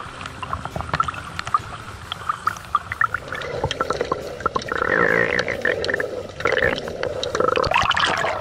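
Sea water sloshing and gurgling around an action camera as it moves between the surface and underwater, with many scattered clicks and a stronger bubbling stretch in the second half.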